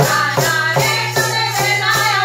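Women's voices singing a Gujarati devotional song together, with a tabla pair and wooden kartal clappers jingling in a quick, even rhythm.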